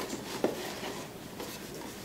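Faint handling of a cardboard box as its hinged lid is lifted open, with a single light click about half a second in.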